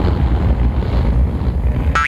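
Wind buffeting the microphone: a loud, steady low rumble with a fainter hiss above it.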